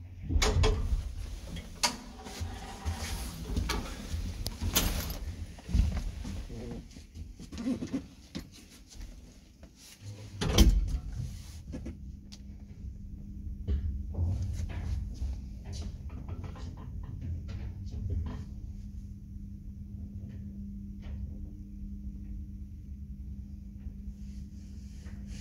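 1985 ZREMB passenger lift, from inside the car: scattered clunks and knocks from doors and passengers' feet, then one loud clunk about ten seconds in. After that comes the steady hum of the car travelling between floors.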